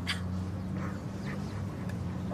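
A steady low hum, with a few faint short sounds over it in the first half.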